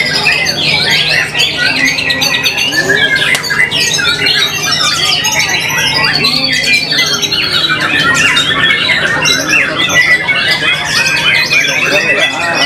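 White-rumped shama singing in a contest cage: a loud, dense, unbroken stream of quick, varied whistled phrases.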